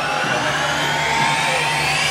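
Electronic dance music build-up over a club sound system: a synth sweep rising steadily in pitch over a wash of noise, with the bass and beat dropped out.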